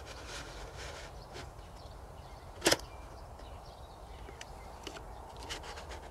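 Faint handling of a cardboard pheromone trap as a sticky glue liner is slid into its folded housing, with a few light paper clicks and one sharp click a little before halfway.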